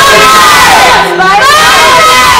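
A group of boys shouting loud, drawn-out calls together through hands cupped around their mouths. Their voices slide up and fall away in pitch, one call falling off about a second in and the next rising after it.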